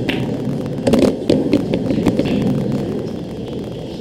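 Pool balls clicking: a sharp click at the start as the cue ball meets the green ball, then a run of clicks and knocks from about one to two seconds in as the balls strike each other and the cushions, over a steady low hum.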